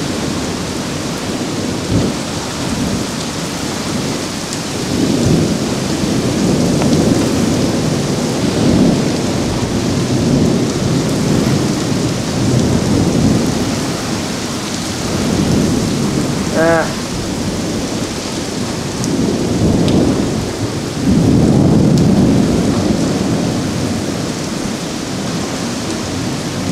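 Severe thunderstorm: heavy rain pouring steadily, with deep rumbling surges that swell and fade every few seconds.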